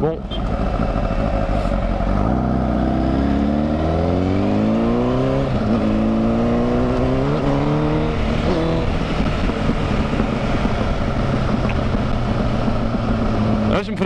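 Honda sport motorcycle engine pulling away and accelerating, its pitch rising, dropping back at a gear change, then rising and dropping back again, before it settles to a steady cruise. Wind noise rushes over the microphone throughout.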